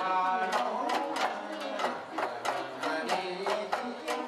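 Shamisen playing bon-odori dance accompaniment, plucked notes over a steady beat of sharp strikes about three a second.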